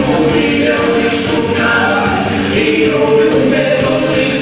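Gospel praise song playing loudly: singing voices over backing music, with long held notes.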